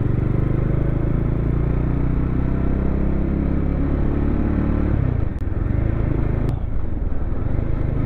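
Bajaj Dominar 400 BS6's single-cylinder engine running under way, heard from the rider's seat. Its note holds steady and eases slightly, then breaks and drops about five seconds in, and runs on at a lower pitch.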